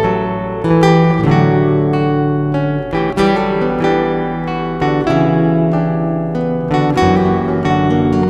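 Instrumental acoustic guitar music, with chords strummed and notes plucked and left to ring.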